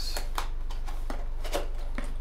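Cardboard packaging being handled: a few light clicks and rustles as small boxes and inserts are moved and set into the Maschine MK3's carton, over a steady low electrical hum.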